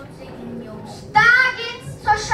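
A child's voice giving one loud, high-pitched, drawn-out call a little over a second in, after a second of quiet hall tone.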